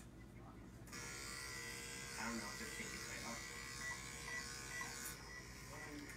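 A steady electric buzz starts suddenly about a second in, with faint voices under it.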